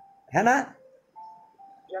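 A man's voice briefly saying "है ना" in Hindi, followed in the second half by a faint steady tone that steps once to a slightly lower pitch.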